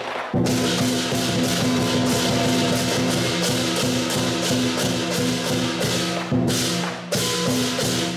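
Lion dance percussion band, drum and clashing cymbals, playing a fast continuous beat with ringing metal tones, broken briefly just after the start and again about seven seconds in.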